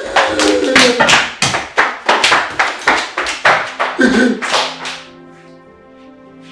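A fast, irregular run of loud sharp smacks, several a second, as women scuffle and hurry across a hard tiled floor, with their voices crying out among them. About five seconds in the smacks stop and quiet background music with sustained chords carries on.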